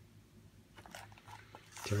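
Faint crinkling and clicking of a picture book's paper page as fingers take hold of it to turn it, starting about a second in. A man's voice begins speaking at the very end.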